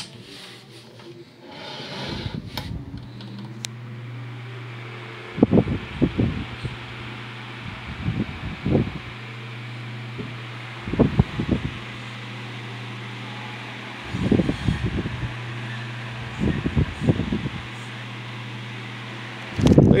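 1960s GE oscillating desk fan running: a steady motor hum under the rush of air from its blades, building over the first few seconds as the fan comes up to speed. Louder rumbling gusts come, mostly in pairs, every two to three seconds.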